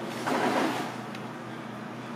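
Steady low machine hum of a commercial kitchen, with a brief louder burst of noise just after the start.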